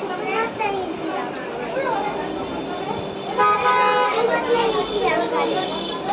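Voices talking, a child's among them, with a steady held multi-note tone coming in about halfway through and lasting a couple of seconds.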